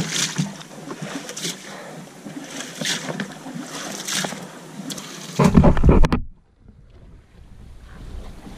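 Water splashing at the side of a small boat, a few splashes about a second apart. About five and a half seconds in comes a loud low rumble of wind on the microphone, which then drops suddenly to a faint hiss.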